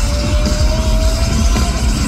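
Live nu-metal band playing loud through a stadium PA, heard from within the crowd: heavy bass and drums under a long held note that slowly rises in pitch and stops near the end.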